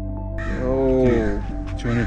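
A man's long drawn-out shout, rising then falling in pitch, starts about half a second in over soft ambient music and is followed by a few quick words.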